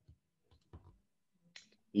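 A few faint, short clicks in an otherwise quiet gap: one just after the start, a pair a little under a second in, and one more shortly before speech begins.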